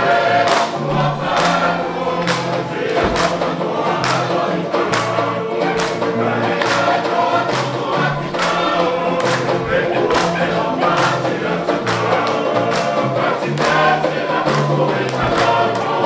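Tongan string band: a group of men singing together over strummed acoustic guitars, banjo and ukuleles, keeping a steady strummed beat for a tau'olunga dance.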